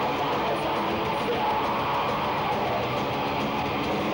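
Melodic death metal band playing live: loud, dense distorted electric guitars with bass and drums, running steadily without a break.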